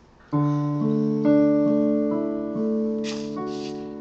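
Digital keyboard on a piano voice playing a left-hand broken D major chord, D, A, then up to D, each note entering in turn and ringing on as the sound slowly fades.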